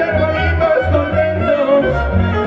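A live regional Mexican band plays an instrumental passage: a sliding violin melody over a steady, pulsing bass line and strummed guitars.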